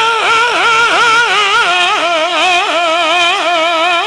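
A man's voice in sung recitation, holding one long note that wavers up and down in ornamented turns, amplified through a microphone.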